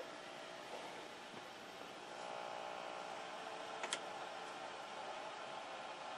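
Faint steady hiss, with faint traces of a tone in the middle range from about two seconds in and a single small click about four seconds in.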